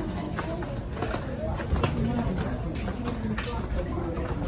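Outdoor street ambience in a narrow alley: faint voices of people nearby over a steady background, with scattered light clicks of footsteps on the stone paving.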